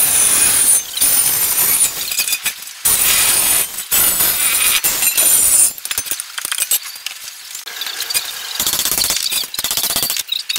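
Electric angle grinder cutting through the steel collar of an old gas bottle, a harsh grinding with a high whine, in several bursts with short pauses. It stops a little over halfway through, leaving quieter metal clatter and one more short burst near the end.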